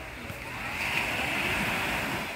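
Steady wash of sea surf at the shore, getting louder about half a second in, with faint distant voices of people in the water.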